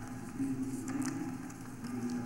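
A folded paper slip being unfolded close to a microphone: a few short crinkles of paper over a low background hum.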